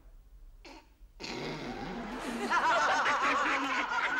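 A woman bursting out laughing about a second in, the laughter growing louder and breaking into rapid peals.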